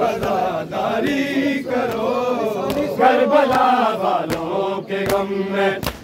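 A group of men chanting a Shia noha (Muharram lament) in unison with long, drawn-out wavering notes. Sharp slaps of chest-beating (matam) cut in at irregular intervals.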